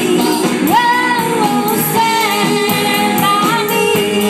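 Live band playing: a woman sings lead through a microphone over electric guitar, bass guitar and drums, with a steady beat from the cymbals.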